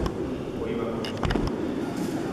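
Indistinct voices murmuring in the church, with a few light clicks and a short low thump about a second in.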